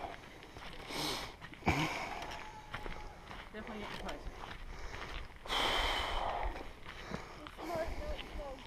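A hiker's breathing and footsteps on a dirt and rock trail, with a longer, louder breath about five and a half seconds in and a sharp knock of a step near two seconds.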